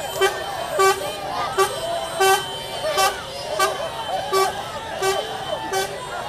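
A vehicle horn tooting in short, evenly repeated blasts, about nine in six seconds, over a crowd's shouting voices.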